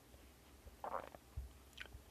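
Quiet room tone with a few faint small noises close to the microphone: a short rustle about a second in, a low bump just after it, and a brief click near the end.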